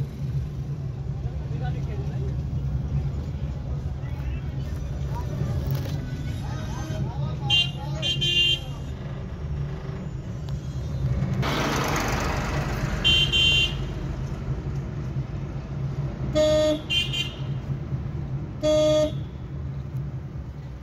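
Car cabin rumble while driving through street traffic, with car horns honking in short toots several times in the second half. A louder rush of road noise swells about halfway through.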